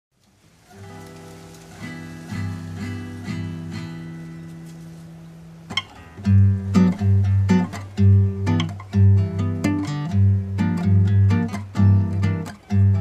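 Background music on acoustic guitar: a soft passage of plucked notes fades in, then about halfway through a louder, rhythmic part with deep notes comes in.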